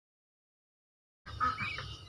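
Digital silence for just over a second, then outdoor ambience with a low rumble and a few short high chirps.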